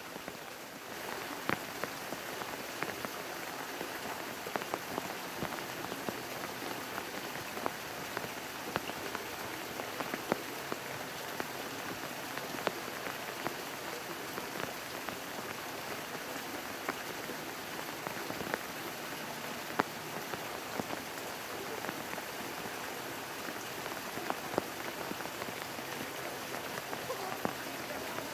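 Steady rain falling, an even hiss with many small scattered drop ticks.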